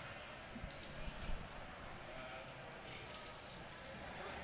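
Low room tone in a large hall between speakers, with a few faint knocks about a second in.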